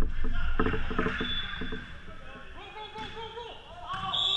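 Volleyball players' voices calling out in an echoing gymnasium, over a run of short knocks and thuds of play in the first two seconds.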